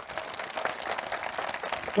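Audience applauding: a dense patter of many hands clapping, fairly quiet, during a pause in a speech.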